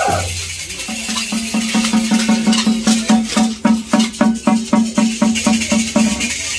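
Matachines dance music: a hand-held frame drum beaten with a stick in a steady beat of about four to five strokes a second that quickens slightly, with the dancers' rattles shaking over it.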